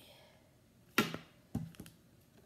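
A few sharp clicks and taps from a plastic phone case on a smartphone being handled, the loudest about a second in and a couple of lighter ones soon after.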